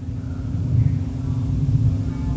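Low, steady background rumble with a faint constant hum.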